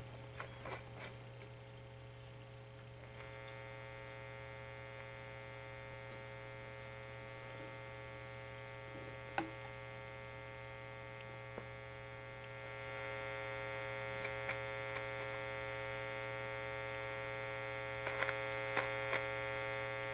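RCA T62 tube radio's speaker giving a steady mains hum with a buzzy stack of overtones while tuned to 600 kc with no station coming in. The hum grows louder about two-thirds of the way through, and a few small clicks come from handling the dial.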